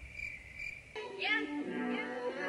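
A high chirping tone pulsing about four times a second, cut off about a second in by music with a sung melody.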